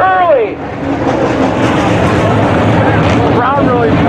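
Dirt-track modified race cars running on the oval, a steady rough engine noise, with a loudspeaker voice briefly at the start and again near the end.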